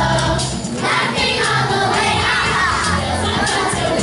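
Children's choir singing a Christmas song with instrumental accompaniment and a steady bass line.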